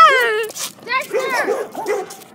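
Dogs in a scuffle: a long high whine falling in pitch that ends about half a second in, then a run of short yelping barks.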